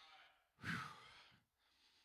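A man's breath into a handheld microphone held close to the mouth, a short noisy sigh about half a second in, lasting under a second.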